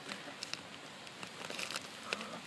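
Faint crinkling of a clear plastic bag as fingers pick at and loosen its string chain-stitch closure, with a few small clicks.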